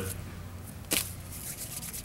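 Quiet room tone with a steady low hum and one short soft noise about a second in.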